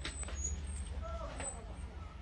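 Faint distant voices over a steady low rumble of background noise.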